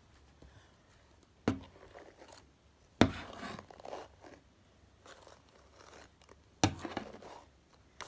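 Close handling noise from a doll having its long hair brushed by hand: three sharp knocks, each followed by about a second of rustling and scraping. The loudest knock comes about three seconds in.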